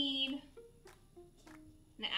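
Quiet background music with a few held notes that step from one pitch to another, following the tail end of a spoken word at the start.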